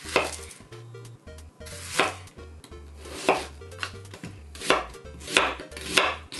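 Kitchen knife cutting a raw onion into wedges on a bamboo cutting board: about six crisp, crunchy cuts at uneven spacing, each ending on the board.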